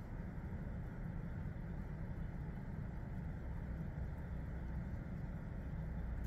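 Steady low background hum and hiss with no distinct event: room noise.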